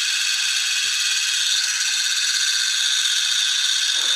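Hurricane ball toy (two balls glued together) spinning fast on a glass mirror, making a steady high-pitched whir.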